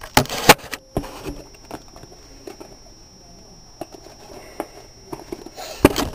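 Handling noise from a camera being picked up and set down on a desk: a flurry of knocks and clicks in the first second, a few seconds of faint rustling with small ticks, then one sharp knock near the end.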